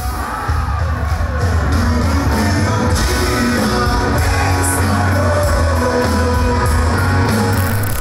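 A Christian rock band playing live in a large hall: electric guitar, bass and drums with a male lead singer, the sound of the whole band filling the room.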